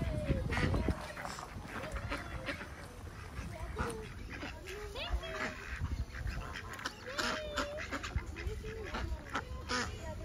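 A flock of domestic ducks and geese on a pond calling over and over, short quacks and honks one after another, with one longer wavering call near the end. A low rumble sounds in the first second.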